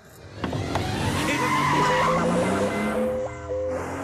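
Car engine revving and tyres skidding as the car is put into gear and pulls away with a jolt, starting suddenly about half a second in with a rising whine. Film background music comes in over it.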